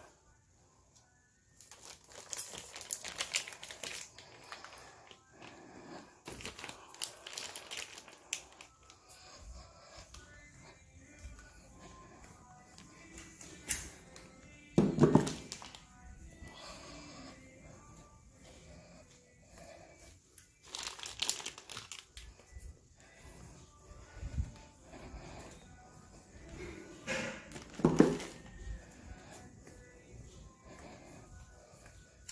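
Rustling and crinkling of plastic wrapping and phone handling noise as the phone is moved along shelves of wrapped kite-string spools, with faint music in the background. Two louder bumps stand out, about halfway and near the end.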